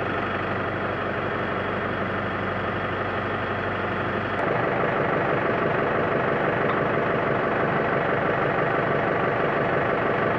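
Case tractor engine idling steadily. About four seconds in, the drone changes character and gets a little louder.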